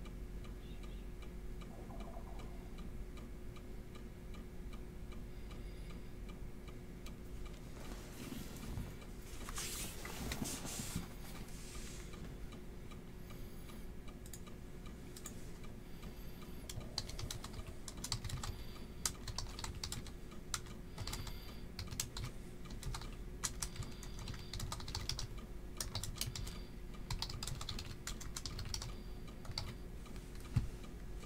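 Typing on a computer keyboard: faint irregular key clicks over a low steady hum, with a short rustling noise about nine to eleven seconds in.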